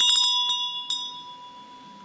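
Small brass Buddhist handbell (linh) shaken, its clapper striking a few times in the first second, then a clear ringing tone that slowly fades.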